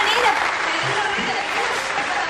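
Audience applause mixed with voices, with music coming in about a second in.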